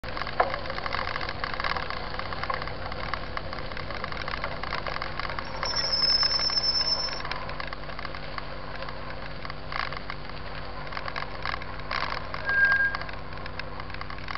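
Mountain bike riding over a dirt track: steady rolling and rattling noise with frequent small knocks, and a brief high squeal about six seconds in.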